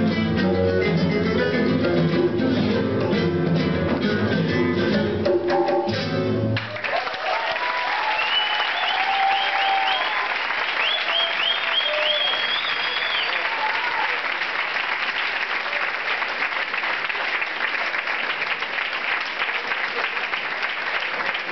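Acoustic guitars, guitarrón and a hand drum playing the last bars of a tango, ending on a final chord about six seconds in. An audience then applauds, with whistles and shouts for a few seconds after the end.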